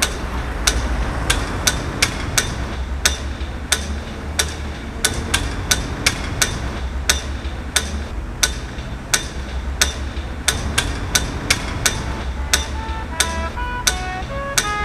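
A run of sharp, dry knocks, unevenly spaced at about two to three a second, over a steady low rumble. Near the end a melody of short high notes comes in.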